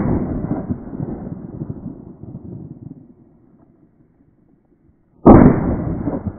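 A shotgun shot's report echoing and dying away over about three seconds, then a second shotgun shot about five seconds in, again with a long echoing tail.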